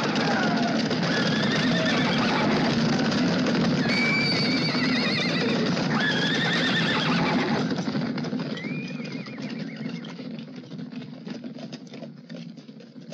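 A herd of horses galloping past in a dense rumble of hoofbeats, with several wavering whinnies. The herd fades away after about eight seconds, leaving scattered hoof clicks.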